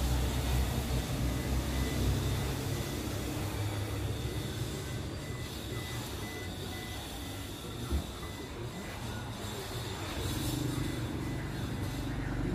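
Steady low rumble of a vehicle, with faint rapid beeping a few seconds in and a single soft knock near eight seconds.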